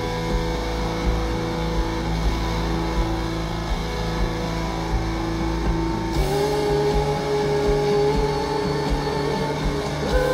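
Live rock band playing with held, droning electric guitar chords over bass and drums. The chord changes about six seconds in, and no voice is clearly on top.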